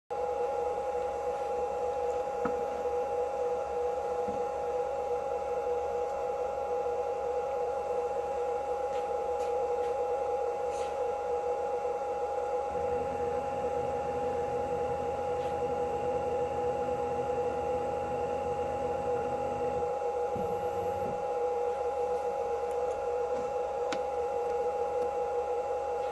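CNC router running Z-axis zero setting with a touch plate: a steady high whine from the machine throughout, and from about 13 to 20 seconds in a low stepper-motor hum as the Z axis slowly lowers the bit toward the probe, followed by a short second movement about a second later.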